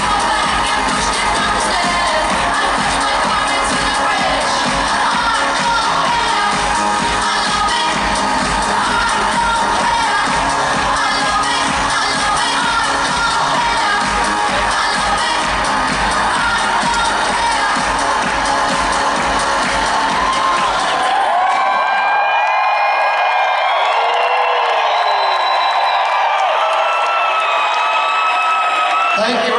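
Loud arena music with a steady beat under a cheering crowd. About three-quarters of the way through the music's beat and bass stop, leaving the crowd cheering with high shouts and whoops.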